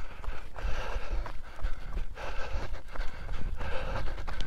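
A runner's footsteps at an easy jogging pace, about three strides a second, with his breathing over a low rumble from the moving camera.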